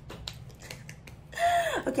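A quick run of soft, light hand claps for about the first second, then a woman's voice comes in near the end.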